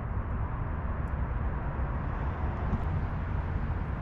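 Steady low rumbling background noise, even throughout, with no distinct events.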